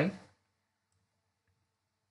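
A man's voice trails off at the end of a word, followed by near silence with only faint traces of room tone.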